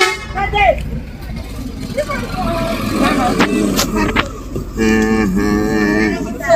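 A vehicle horn sounds for about a second near the end, over the low rumble of an idling car engine.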